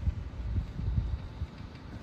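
Wind buffeting the microphone: a low, uneven rumble that swells and dips.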